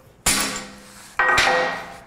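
Two hammer blows on a thin ring cut from cast iron pipe, a quarter second and just over a second in, each followed by a brief metallic ring. The brittle cast iron breaks under the blows.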